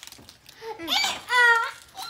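A young child's high-pitched voice: two short wordless vocal sounds, the first rising in pitch and the second held, in quick succession.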